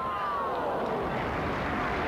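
Steady crowd noise from football spectators just after a shot at goal, with one drawn-out voice falling in pitch and fading in the first second.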